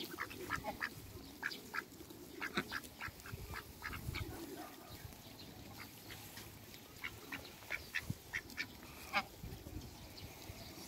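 Ducks quacking in short, scattered calls that overlap at times, with the loudest call near the end.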